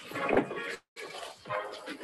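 A bus pulling up at a stop and opening its door, heard as unsteady noise through compressed video-call audio that cuts out completely for a moment just before a second in.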